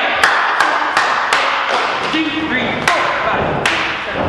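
Tumbling pass on a sprung gym floor: hands and feet strike the mat in a quick run of sharp slaps and thuds, about three a second, then two more impacts a little later. Brief voices come in between.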